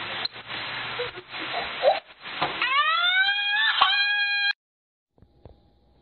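Rustling noise with a few light knocks, then a high, drawn-out squeal of about two seconds that rises in pitch and holds. It stops suddenly.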